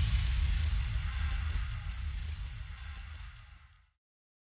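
The tail end of a dancehall remix fading out: a low bass rumble with faint high ticks above it that dies away to nothing just before the end.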